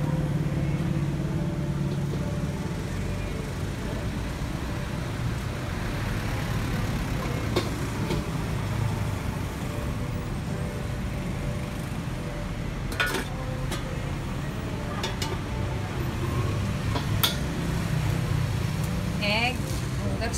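Gas wok burner running with a steady low roar under a smoking carbon-steel wok as it heats, with a few sharp clicks of a metal spatula against the pan.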